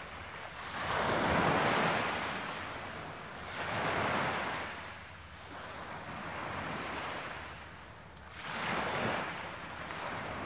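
Ocean waves washing in on a shore: the surf noise swells and falls away three times, loudest about a second in.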